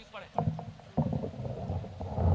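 A microphone on its stand being grabbed and repositioned. Knocks come about half a second and a second in, followed by continuous rumbling handling noise through the microphone.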